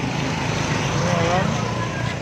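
Motorbike engine passing close by on a busy street, swelling and then fading, over traffic noise and voices.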